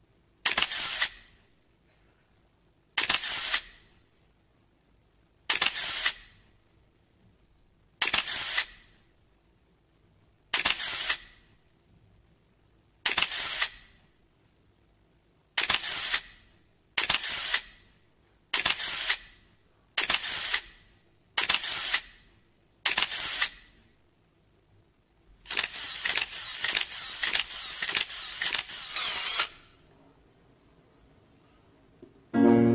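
A series of sharp, hissy camera-shutter clacks, each about half a second long. They come about every two and a half seconds, then faster from about halfway, and close into a rapid run of shots near the end.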